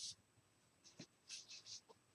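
Near silence: room tone with a few faint, short rustles and a soft click about a second in.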